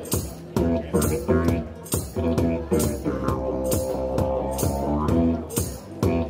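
Didgeridoo played into a microphone: a low drone with shifting overtones, over a steady percussive beat about twice a second.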